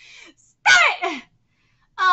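A woman's brief wordless vocal outburst: a faint breath, then one loud, short cry that falls in pitch.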